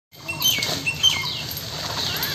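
Small birds chirping, with short whistled notes and quick falling chirps repeated several times, over a faint low background rumble.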